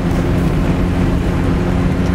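Zastava Yugo heard from inside the cabin while driving: a steady engine drone over a constant rumble of road and wind noise.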